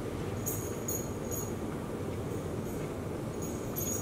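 Steady low background hum, with a few faint light clicks during the quiet chewing of a bite.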